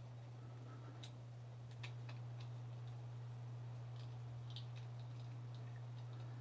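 Faint, scattered small clicks of a screwdriver backing out the pocket-clip screws of a Benchmade Griptilian folding knife, over a steady low hum.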